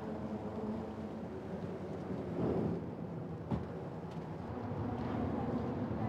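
Vehicle engines idling steadily in a low hum, with a single sharp knock about three and a half seconds in.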